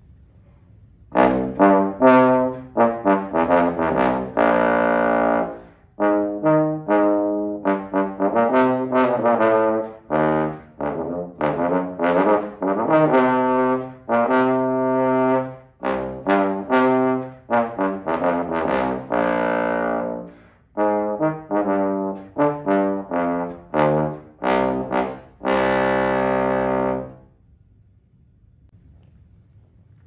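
Unaccompanied bass trombone playing a fast Latin (mambo) jazz line: short, detached notes grouped in phrases with brief pauses for breath, ending on a long held note near the end.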